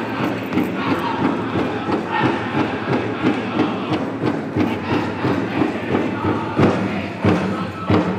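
Powwow drum group playing a fancy shawl song: singers chanting over a big drum struck in a steady, quick beat. Near the end, louder strikes come about every two-thirds of a second.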